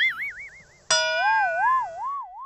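Two plucked guitar notes with a deep, slow wobbling vibrato, the second struck about a second in and lower than the first, ringing and fading.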